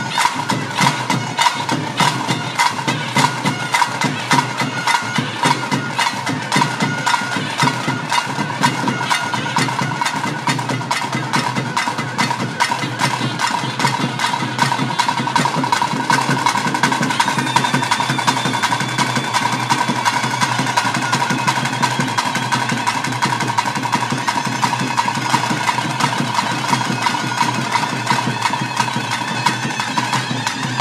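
Traditional bhuta kola ritual music: a wind instrument holding long notes over fast, continuous drumming. Higher notes join in about halfway through.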